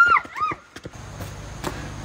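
Children shrieking as they run off, dying away about half a second in; then a low steady hum with a few faint clicks.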